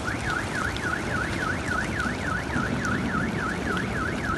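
Car alarm sounding a fast rising-and-falling warble, about four sweeps a second.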